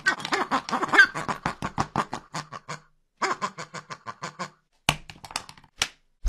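A man laughing hard in rapid, rhythmic bursts, two long fits with a short break between, followed by two sharp smacks near the end.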